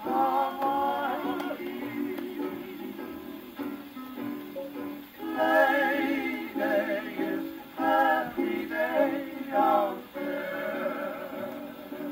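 A 1940 Decca 78 rpm shellac record of Hawaiian string-band music playing acoustically on an Orthophonic Victrola phonograph. A wavering, sliding melody line runs over a steady plucked-string accompaniment.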